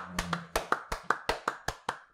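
A couple of people clapping hands fast and steadily, about seven claps a second, close to the microphones.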